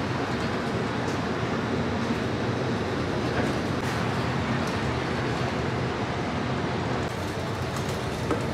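Inside a moving city bus: steady engine hum and road noise heard from within the cabin.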